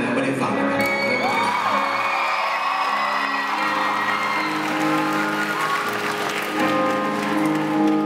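Audience applauding and cheering over steady sustained chords from the band, the applause thinning out about halfway through.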